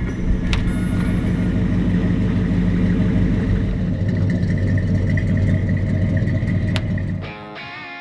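A vehicle engine running with a low, steady rumble that stops about seven seconds in.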